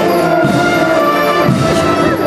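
Symphonic wind band playing a slow processional march, with held brass chords changing every half second or so.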